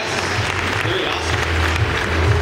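Audience applauding, mixed with voices, with a steady low bass sound underneath.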